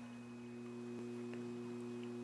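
Quiet room tone with a faint, steady electrical hum, a second slightly higher hum tone joining a quarter of the way in, and a faint tick about halfway.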